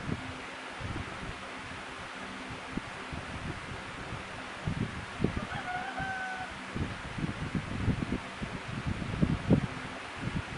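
A rooster crows faintly once, about halfway through, a single held call lasting about a second. Scattered soft low bumps and knocks run under it, strongest near the end.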